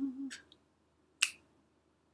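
The tail of a held sung note dies away, then a single finger snap a little over a second in, with a fainter click just before it. The snaps fall about a second and a half apart, keeping time between sung phrases.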